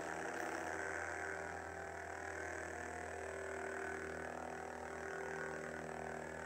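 Hasbro Force FX Darth Maul lightsaber playing its steady, low idle hum from its built-in speaker with the blade lit.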